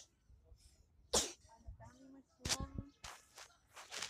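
Voices talking at a distance, with two short, sharp, noisy bursts close to the microphone, about one and two and a half seconds in.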